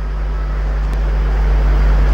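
Steady low electrical mains hum with a hiss of background noise under it, slowly growing louder.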